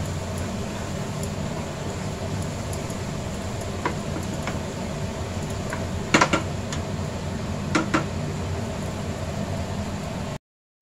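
Spatula stirring food in a non-stick frying pan, with a few sharp knocks against the pan, the loudest about six seconds in, over a steady background hum.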